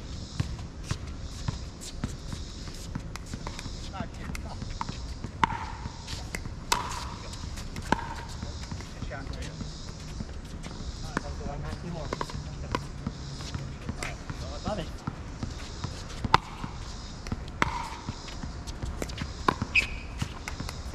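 Pickleball rally: sharp pops of paddles striking the hard plastic ball, a dozen or so hits spread through, some with a short ringing ping.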